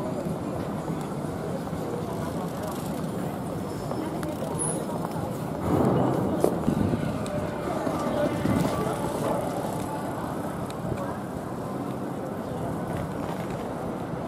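Busy city street ambience: steady traffic noise with people talking in the background, growing louder for a few seconds about six seconds in.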